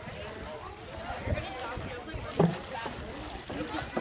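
Outdoor voices of people chatting and calling, with a splash about two and a half seconds in as a jumper hits the water below the wharf.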